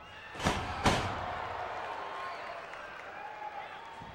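Two heavy thuds of wrestlers' bodies hitting the ring canvas, about half a second apart near the start, followed by the crowd's steady chatter and shouts in the hall.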